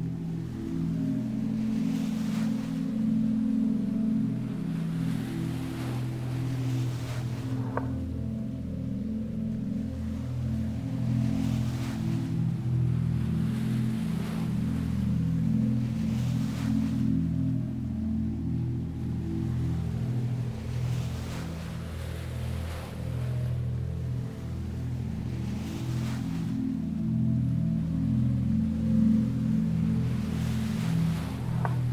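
Ambient music: a low, sustained drone of held chords, with the sound of sea waves washing in and fading every four or five seconds.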